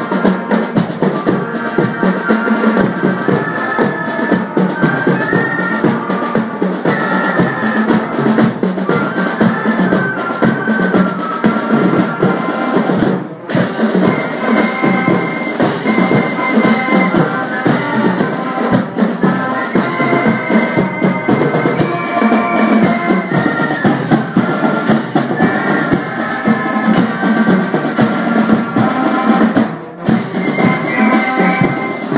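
High school marching band playing a tune, saxophones carrying the melody over bass and snare drums, with a brief break about 13 seconds in.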